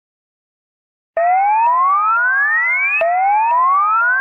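Silence for about a second, then an electronic rising-sweep sound effect: a tone gliding steadily upward for nearly two seconds, dropping back and rising again, with faint ticks about twice a second.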